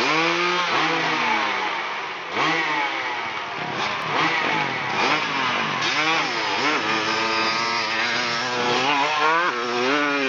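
Dirt-bike engine revved up and down several times at the start line, then held high from about six seconds in as the bike launches and accelerates up the hill, its pitch climbing and dropping back with each gear change.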